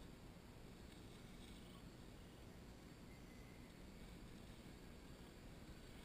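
Near silence: a faint, steady low background rumble with no distinct sounds.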